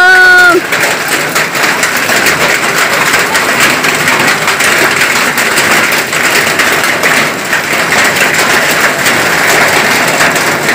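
Hail mixed with rain falling steadily, a dense pattering of many small impacts on roofs and wet concrete.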